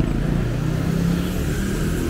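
Street traffic: a car engine humming as it drives by on the road.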